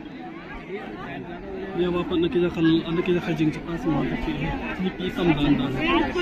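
Crowd chatter: many people talking at once, with one nearby voice standing out louder from about two seconds in.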